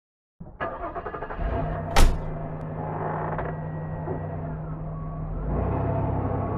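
A car: a couple of sharp knocks and one loud bang about two seconds in, over an engine running with a steady low hum, which grows fuller and louder about five and a half seconds in.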